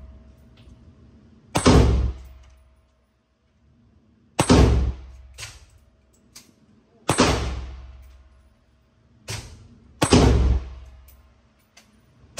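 A large-calibre handgun fired four times, one shot every two to three seconds. Each crack has a long echoing tail in the indoor range.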